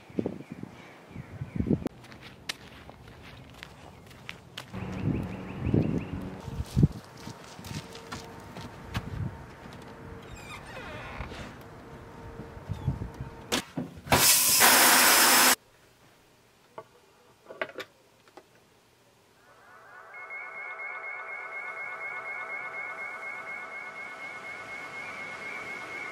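Scattered faint clicks and knocks, then a shower head spraying water for about a second and a half, cut off suddenly. After a short near-silence, a steady droning tone comes in and holds.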